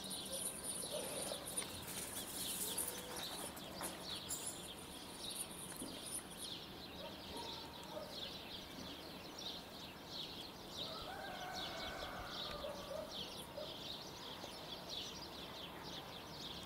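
Small birds chirping rapidly and continuously in a faint outdoor chorus. A brief lower-pitched call comes in about eleven seconds in.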